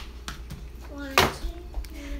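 A short bit of voice in the room about a second in, with one sharp, loud sound in the middle of it and a few small clicks around it.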